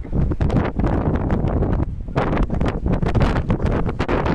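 Wind buffeting the microphone in gusts: a loud, rumbling noise with a brief lull about two seconds in.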